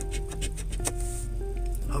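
Soft background music with held notes that change pitch a couple of times, over the faint scraping of a coin rubbing the coating off a scratch-off lottery ticket.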